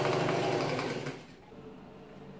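Singer electric sewing machine running steadily as it stitches, cutting off about a second in. Quiet room tone follows.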